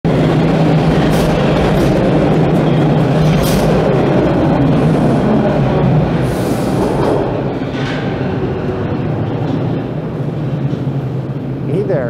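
TTC subway train running through the station platform, a loud rumble of wheels and motors on the track that eases after about six seconds.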